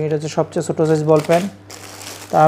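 A man talking, with the crinkle of clear plastic packaging as bagged garments are handled; the rustle is clearest near the end when the talking pauses.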